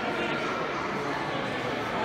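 Crowd of visitors talking over one another in a large hall, a steady chatter with no single voice standing out.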